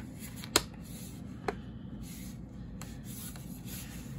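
Hands rubbing and handling a Blu-ray steelbook and its card artwork sleeve, a faint steady rustle with a sharp click about half a second in and a fainter click about a second later.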